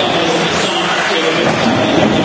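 Several 1/10-scale electric 4WD RC buggies racing, their motors and gear drives making whines that rise and fall in pitch as they speed up and slow down.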